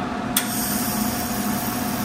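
A single sharp metallic click about a third of a second in, the conductive ground clip being clamped onto the steel welding table, over a steady machine hum.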